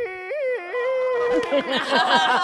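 A man sings one long, high held note with sharp jumps up and down in pitch near the start. About a second and a half in, other men's voices break out over it with exclamations and laughter.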